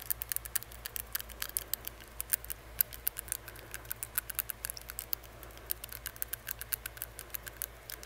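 Quick, irregular clicking of a metal tongue ring against the teeth and inside of the mouth, several clicks a second, picked up by an earbud microphone held right at the mouth.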